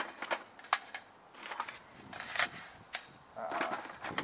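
Hard plastic and metal gun magazines clacking against each other and against a plastic storage bin as a hand rummages through it: sharp irregular clicks with rustling between them.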